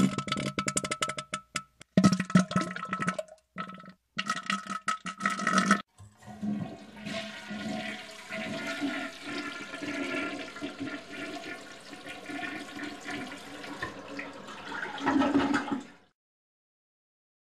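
For about the first six seconds there are choppy, stop-start sounds with steady tones, cut by short gaps. Then a toilet flushes, with water rushing steadily for about ten seconds before it stops near the end.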